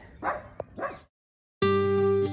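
A dog giving a few short yips in the first second, then the sound cuts out and acoustic guitar music starts about one and a half seconds in.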